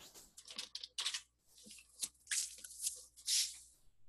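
Typing on a computer keyboard: a run of short, sharp keystrokes at an uneven pace as a short word is typed.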